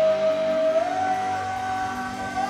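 Live rock band playing, with a long held lead note that steps up in pitch about a second in.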